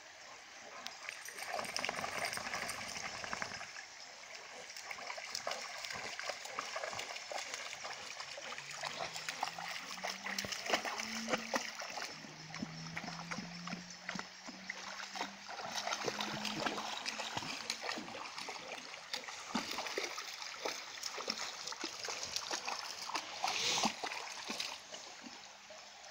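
Shallow river running steadily, with frequent small splashes as two bullmastiffs wade and nose about in the water.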